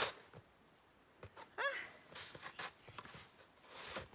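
A snow shovel scraping and scooping through snow in a few short strokes, with a brief vocal "ha?" between them.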